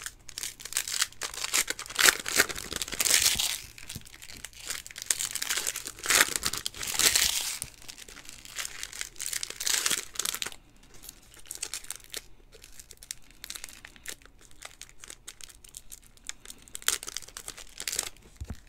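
Wrappers of 2020 Panini Donruss football card packs being torn open and crinkled, with loud crinkling for the first ten seconds or so, then quieter rustling and light clicks as the cards are handled.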